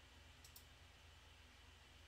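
Near silence with a faint, quick double click from a computer mouse about half a second in.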